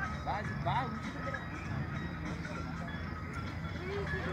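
Steady background chatter of several voices over a low hum, with music playing faintly.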